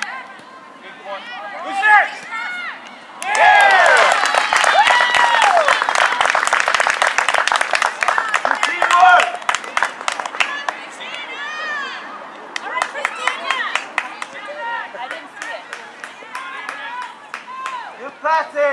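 A small crowd of spectators breaks into high-pitched cheering and clapping about three seconds in, the kind of outburst that greets a goal. It dies down after about six seconds into scattered shouts and a few claps.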